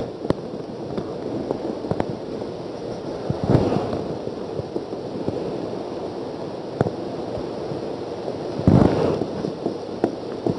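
Whiteboard marker tapping and scraping on the board in short strokes, heard as a run of small clicks over a steady noisy background, with two louder rustling bursts about three and a half and nine seconds in.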